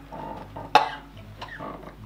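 A person coughing once, sharply, about three-quarters of a second in: a reaction to a foul-tasting Bean Boozled jelly bean, the spoiled milk flavour.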